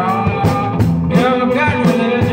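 Live blues music: amplified guitar played over a steady drum beat.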